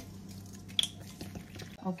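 Faint wet drips and squishes from a water-soaked mixture of ground meat and blood in a steel bowl, with one sharper tick a little under a second in.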